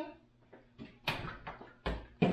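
A refrigerator door pulled open about a second in, followed by a few clicks and knocks, the sharpest and heaviest just before the end.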